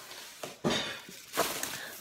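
Rustling of a grocery bag and packaging as items are pulled out, with two louder bursts about half a second and a second and a half in.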